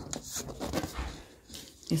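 A few soft knocks and rubs of an upturned aluminium cake pan being handled and lifted off a turned-out cake.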